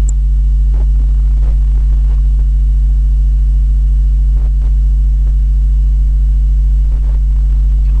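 Steady low electrical hum, the loudest sound throughout, with a few faint clicks.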